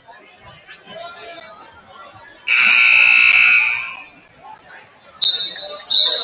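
Gymnasium scoreboard horn sounding once for about a second and a half, the signal that ends a timeout in a basketball game. Near the end comes a sharp, short blast of a referee's whistle, with crowd chatter throughout.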